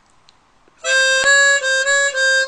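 Hohner Super 64X chromatic harmonica playing a held note that starts about a second in. The note steps up a half step and back down a few times as the slide button is pressed in and released, with one click from the slide.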